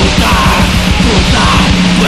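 Heavy metal recording: distorted guitars and rapid, dense drumming under harsh yelled vocals.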